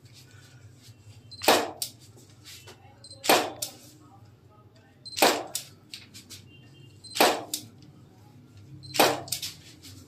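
Camera shutter firing five times, about every two seconds, each shot a sharp click followed by smaller clicks, with a short high beep before some shots. A steady low hum runs underneath.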